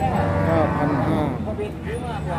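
A cow mooing: one call lasting about a second.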